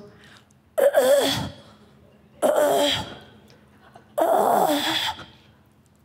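A woman acting out a baby gagging and retching on food it dislikes, with three loud choking retches about a second and a half apart.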